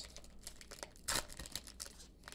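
Foil trading-card pack wrapper and cards crinkling and rustling faintly in the hands, with one louder crinkle just past a second in.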